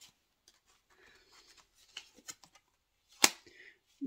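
Tarot cards being handled and drawn from a deck: faint rustling and small flicks of card stock, with one sharp click about three seconds in.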